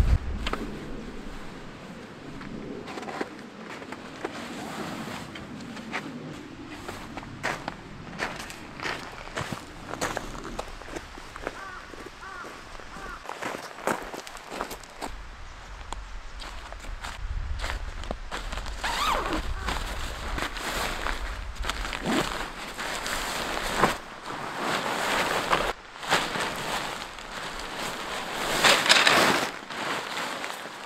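Footsteps on gravel and the handling of a packed dome tent: the carry bag being opened, then the silicone-coated nylon ripstop tent body rustling as it is pulled out and spread on the ground, loudest near the end.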